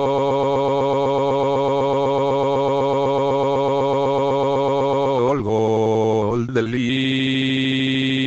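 A synthesized text-to-speech voice holding one long drawn-out vowel at a steady pitch. The pitch shifts about five and a half seconds in and again near the end.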